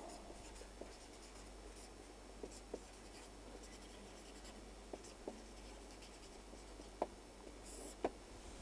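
Faint scratches and light taps of a felt-tip marker writing on paper. The sharpest tap comes about seven seconds in, and a short stroke near the end is the line being drawn under the words.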